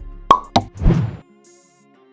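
Two quick pop sound effects, then a short whoosh, from an animated end card.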